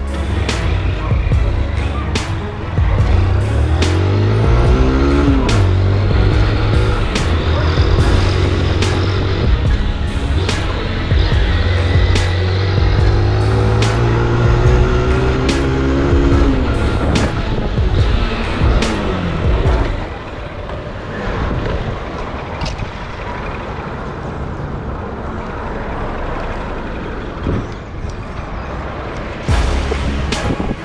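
A motor vehicle's engine runs and accelerates, its pitch rising a few seconds in and again near the 17-second mark, under background music with a regular beat. After about 20 seconds the engine drops back and the music carries on more quietly.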